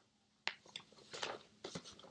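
Paper sheets being picked up and handled: a sharp tap about half a second in, then a few short rustles.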